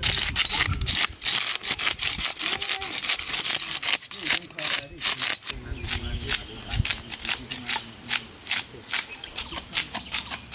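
Knives scraping the scales off two large black carp, quick repeated rasping strokes, several a second, with more than one blade going at once. Boys' voices talk over the scraping.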